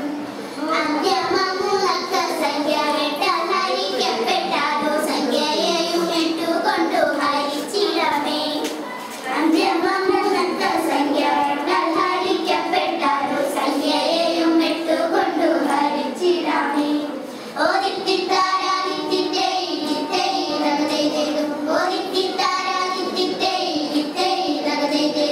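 A group of young girls singing a vanchippattu, the Kerala boat song, into a microphone, with brief pauses between lines.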